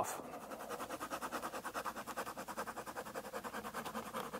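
A pen scratching on paper in quick, even back-and-forth strokes, hatching in a line on a hand-drawn map.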